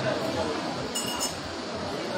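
A single light clink, about a second in, with a brief high ring of several tones, over a low background murmur.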